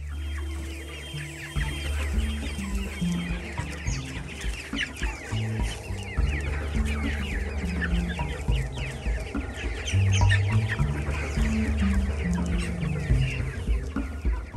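A flock of broiler chickens calling: many short, falling calls overlapping throughout, over background music with a steady bass line.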